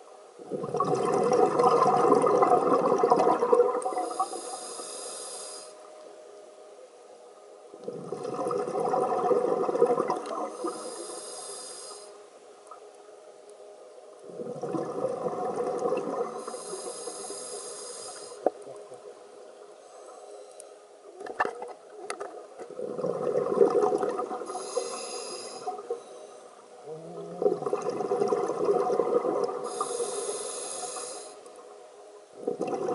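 Scuba diver's own breathing through a regulator: a bubbly rush of exhaled air every six to seven seconds, each followed by a short, high hiss of the demand valve on the inhale. A few sharp clicks come about two-thirds of the way through.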